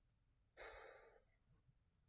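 A man's short breathy sigh, an outward breath of about half a second a little after the start.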